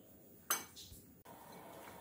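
A single sharp clink of a glass mixing bowl, knocked during hand-kneading of dough, about half a second in, ringing briefly; otherwise faint room tone.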